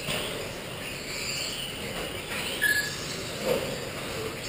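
Electric 2WD modified-class RC buggies racing on an indoor dirt track: a high-pitched electric motor whine that rises and falls with the throttle. There is a brief beep a little past the middle.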